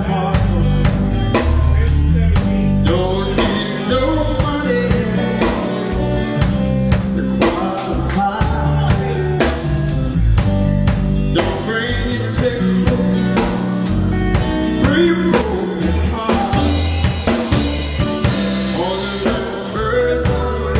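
Live soul-blues band playing: drum kit with snare and cymbals over electric bass, keyboards and electric guitar.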